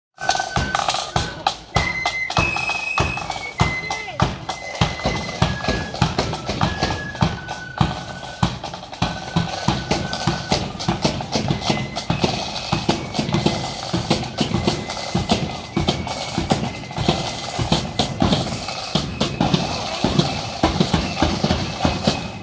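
Marching flute band playing a march: a high tune stepping from note to note over steady rolling side drums and a beating bass drum.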